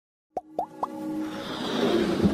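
Logo-intro sound effects: three quick plops, each an upward glide a little higher than the last, followed by a swelling whoosh that builds toward the end.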